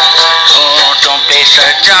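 A man singing a song medley loudly, in long held, gliding melodic phrases.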